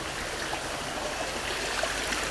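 Steady noise of running water: a hose pouring into a plastic basin, with rain falling.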